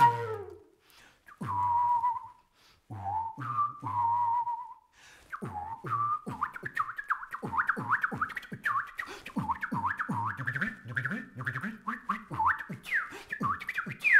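Mouth whistling combined with vocal beatboxing by one performer. A few held whistled notes come first, then from about five seconds in a steady beatbox rhythm with quick falling whistled notes over it.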